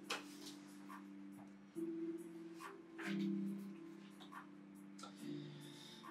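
Soft background music with low held notes that change every second or so, over scattered light crackles and clicks of a Pokémon booster pack being opened and its cards handled.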